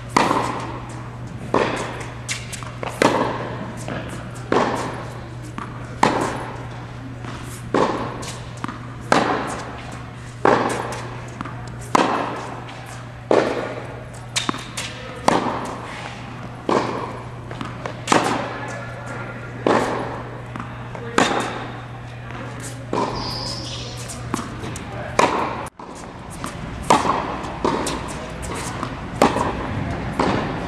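Tennis ball struck back and forth by rackets in a rally, a sharp hit about every one and a half seconds, each with a short echo. A steady low hum runs beneath and stops near the end.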